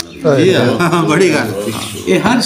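A man's voice reciting poetry in a drawn-out, sung style.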